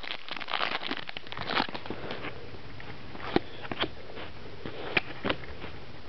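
Wrapper of a hockey trading-card pack crinkling and crackling as it is torn open and the cards are handled, with a few separate sharp clicks in the second half.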